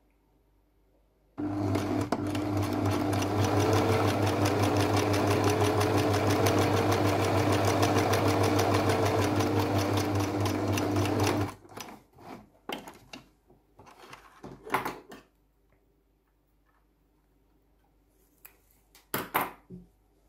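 Domestic electric sewing machine stitching at a steady speed, starting about a second in and stopping after about ten seconds. After it stops come a few short clicks and rustles.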